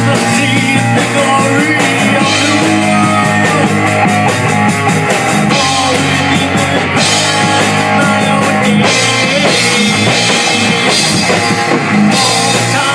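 Heavy metal band playing live in rehearsal: guitar and a drum kit with cymbals, loud and steady without a break.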